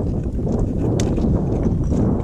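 Hiking boots stepping down loose rock and scree, with one sharp crack of boot on stone about halfway through, over a steady low rumble of wind on the microphone.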